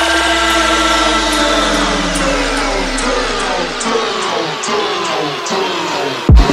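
Dubstep track in a breakdown with no drums: layered synth tones slide slowly downward in pitch over a held sub-bass note that fades out about two-thirds of the way through, with faint ticks about twice a second.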